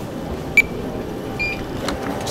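Two short, high electronic beeps, the first sharp and the loudest about half a second in, the second slightly longer about a second and a half in, over the steady hum of a busy airport terminal.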